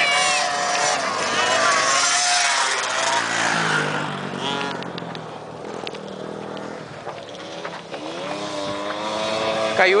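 Small racing ATV engines revving and changing pitch as they run round a dirt track. One drops in pitch as it passes around the middle, and another climbs in pitch near the end.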